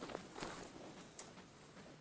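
Faint handling sounds: soft rustling and a few light clicks as a pair of metal dividers is brought up to the engine's crankshaft pulley.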